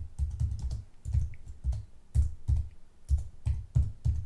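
Computer keyboard being typed on: an irregular run of keystrokes, about three or four a second, each a click with a dull thud, as a layer name is typed in.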